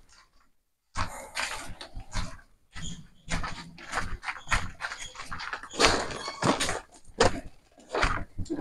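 Footsteps crunching on a gravel path at a walking pace, starting after about a second of silence.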